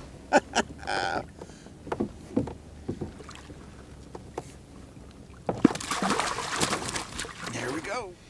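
A hooked rainbow trout splashing and thrashing at the surface beside a kayak as it is brought to the landing net: about two seconds of dense, choppy splashing in the second half, the loudest part. Before that come a few short knocks and clicks.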